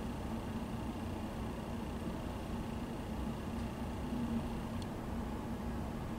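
Room tone of a quiet classroom: a steady low hum with no speech, and a faint click about five seconds in.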